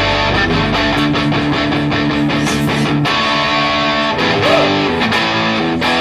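Amplified electric guitar strumming and holding chords with light distortion, a band's guitar level being checked in the stage monitor.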